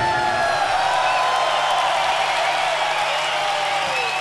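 Large stadium crowd cheering and whooping at the end of a rock song, over a low steady hum.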